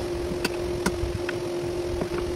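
A steady background hum, with about three light, sharp clicks about half a second apart as the steel vise jaws and torque wrench are handled on the bench.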